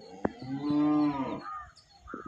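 A single low moo from a cow, about a second long, rising slightly and then falling, with a couple of short sharp clicks just before it.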